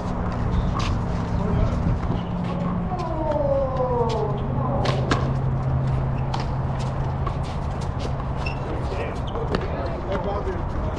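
Handball rally: a small rubber ball slapped by gloved hands and cracking off concrete walls, giving a string of sharp smacks at irregular intervals over a steady low hum.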